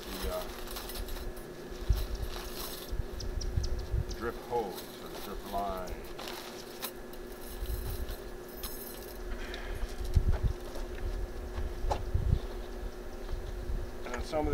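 Handling of thin wire garden stakes and a plastic bag while pinning drip irrigation lines: scattered light metal clinks, knocks and rustling, with a few louder knocks about two, ten and twelve seconds in. A steady low hum runs underneath.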